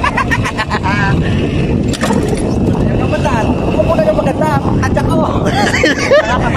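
Small ATV engine running, with people talking and calling out over it.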